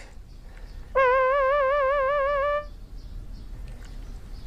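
A single held musical note with a quick, even vibrato, starting about a second in and lasting under two seconds.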